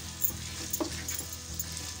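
Light background music over faint sizzling of diced chicken frying in a wok, with a few scrapes of a plastic spatula as the pieces are stirred while their released water cooks off.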